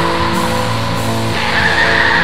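Depressive black metal/doom music: a dense, steady wall of distorted guitar playing held chords.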